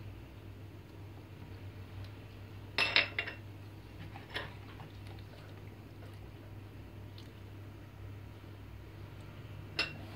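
Quiet stirring of a milky liquid mixture by gloved hand in a plastic bowl, with a few short clinks of kitchenware. The loudest clink comes about three seconds in and another just before the end. A low steady hum runs underneath.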